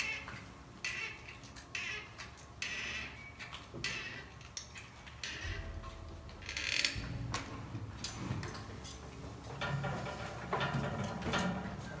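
Scattered clicks, taps and knocks of hands and tools working at an open crypt, with a louder clatter about seven seconds in.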